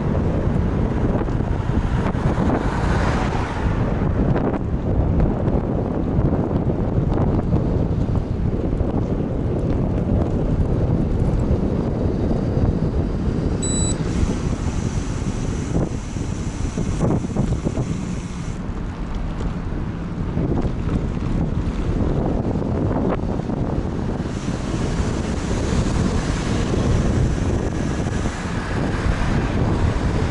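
Wind rushing over the microphone of a bike-mounted camera while riding, a loud, steady low rumble that rises and falls a little with the ride.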